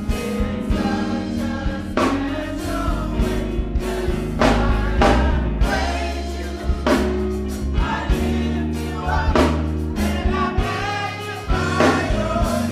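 Church choir singing a gospel song to instrumental accompaniment with a strong bass. A sharp beat recurs about every two and a half seconds.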